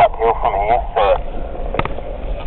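People talking inside a four-wheel-drive vehicle's cabin over the low rumble of its engine as it drives into a shallow river; a single sharp knock comes near the end.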